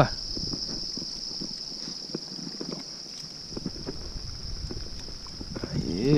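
Steady high-pitched insect chorus, with scattered small splashes and clicks as a hooked traíra is handled in the shallow water.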